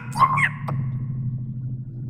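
A short, high, pitch-shifted voice sound through a voice-changer app in the first half second, rising in pitch at its end, then only a steady low hum.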